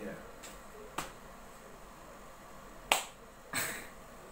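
A few sharp clicks: a faint one about a second in and a louder one near three seconds, then a brief rustle.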